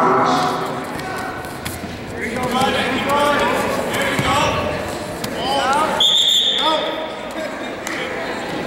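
Shouting voices echoing in a large gym, and one short, steady referee's whistle blast about six seconds in, stopping the wrestling action.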